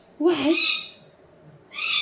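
Pet cockatoo chattering in two short, breathy vocal bursts: one just after the start and another near the end.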